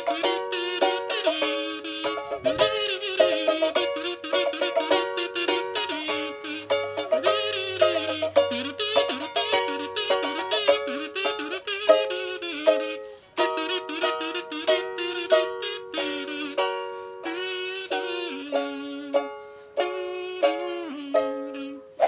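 A buzzy metal-kazoo melody hummed over steadily strummed ukulele chords, with a brief break just past the middle.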